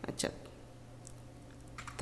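A few faint keystrokes on a computer keyboard, isolated clicks in the second half, after a short spoken word at the start.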